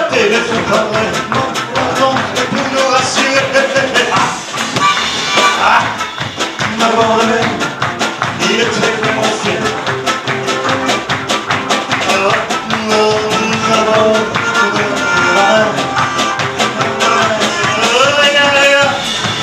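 Live French pop song on a nylon-string classical guitar, strummed in a quick steady rhythm, with a male voice singing over it.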